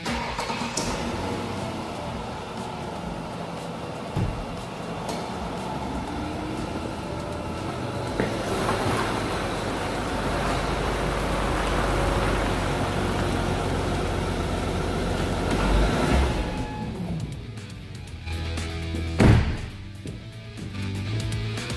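Car engine and tyres of a 2005 Ford Taurus with its 3.0-litre V6 as it drives in and rolls to a stop, the sound building through the middle and then dying away, under background music. A single loud thump near the end.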